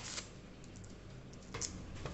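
Light, scattered clicks and taps of a kitchen knife against onion skin and a plastic cutting board while onions are peeled, with one sharper tap about one and a half seconds in.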